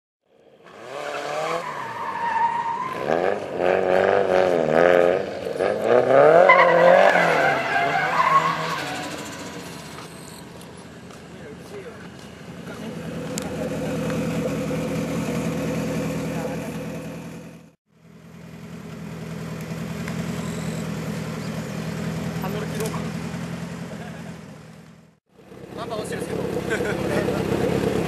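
Car engines revving hard with rapidly rising and falling pitch, then running steadily at idle, in several short segments broken by brief dropouts.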